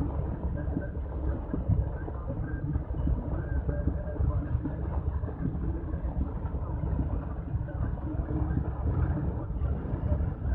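Road vehicle travelling steadily, a continuous low rumble of engine and road noise.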